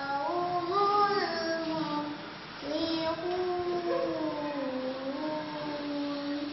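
A young girl recites the Quran in the melodic tilawah style, holding long notes that bend slowly up and down. She sings two phrases with a short breath between them about halfway through.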